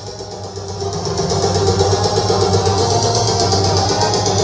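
A large stack of loudspeaker cabinets and horns playing a loud, sustained electronic tone with a fast, even flutter, swelling in level over the first second.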